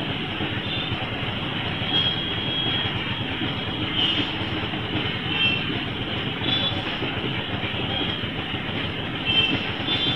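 Steady running of a moving auto-rickshaw heard from its open-sided passenger seat: the small engine and the rattle of the body and road noise, with no let-up.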